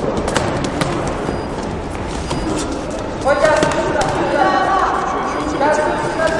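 Loud shouts echoing in a sports hall, coming in from about three seconds in, over a crowd hubbub dotted with sharp knocks during a boxing exchange.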